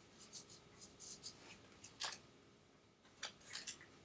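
Faint scratchy rustling of self-adhesive electrode pads being handled, their backing peeled off and the pads pressed onto skin: a run of short crinkles, the loudest about two seconds in and a quick cluster near the end.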